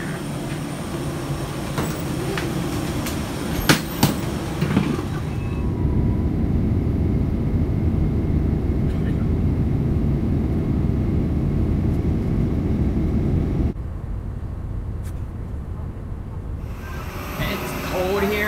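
Jet airliner cabin noise in flight: a steady low rumble for about eight seconds in the middle. A few knocks and clicks come before it. About four seconds before the end it drops abruptly to a quieter steady hum.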